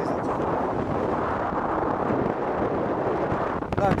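Steady rush of airflow buffeting the microphone of a camera on a paraglider in flight. A voice says a word near the end.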